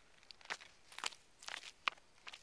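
Footsteps of thin-soled shoes on bare rock: four short scuffing steps about half a second apart.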